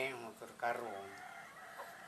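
A rooster crowing once, a drawn-out call starting about half a second in.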